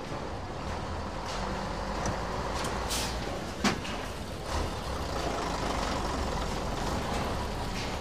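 Steady street background with a low rumble like vehicle traffic, a brief hiss about three seconds in, and a single sharp click just after it.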